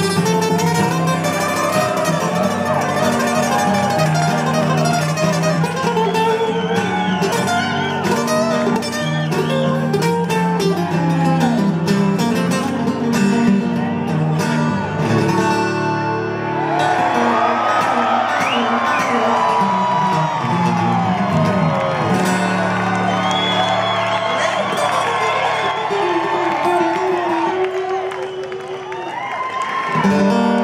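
Rock band playing live on acoustic guitars, with bending melodic lines over sustained chords.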